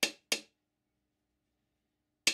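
Two light taps from a small hammer, about a third of a second apart, driving a close-fitting cast iron plug into a hole in a cast iron model steam engine base plate.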